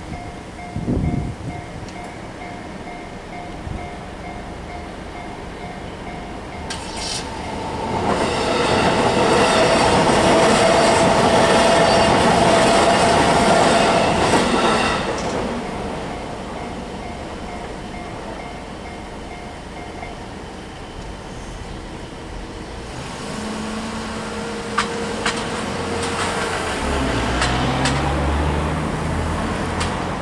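A Japanese level-crossing warning bell rings in an even, repeated tone while a JR Nambu Line electric train passes. The train is loudest from about eight to fifteen seconds in. The bell stops about twenty seconds in, and road vehicles then move off across the crossing.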